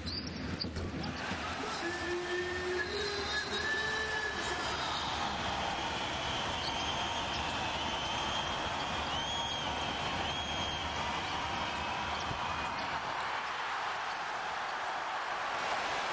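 Basketball game heard from the stands: a steady wash of crowd noise with short high squeaks of players' shoes on the court and a ball bouncing.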